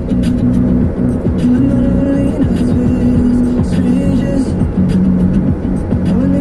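Music playing on the car radio inside a moving car, with steady road noise underneath.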